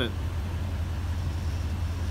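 Toyota Tundra's V8 idling steadily, heard close to its exhaust tip as an even, low rumble.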